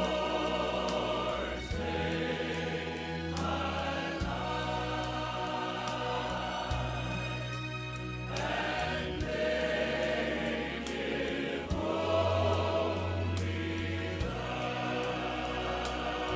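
Choir singing a slow piece over sustained music, with held chords and a low bass note that changes every couple of seconds.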